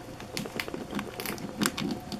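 Pet rat gnawing at a whole almond in its shell: a run of irregular crunching clicks and crackles, several a second.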